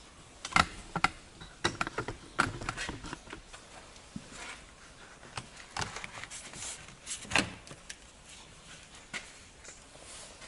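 Plastic window-frame trim on an Audi Q7 front door being worked loose and pulled off by hand: a run of irregular clicks and snaps from its clips and the plastic flexing. The loudest come about half a second in, at one second and at about seven and a half seconds.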